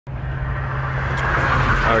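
Volvo D13 inline-six diesel engine running at a steady idle, heard close up in the open engine bay, with one short click about a second in.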